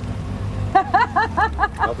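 Low engine rumble of a car moving close by, fading out near the end. Partway through, a voice lets out a quick run of short, evenly spaced syllables over it.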